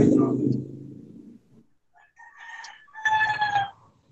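A rooster crowing: a short first phrase about two seconds in, then a louder drawn-out final note that falls slightly in pitch. A loud low-pitched sound at the start fades away over the first second and a half.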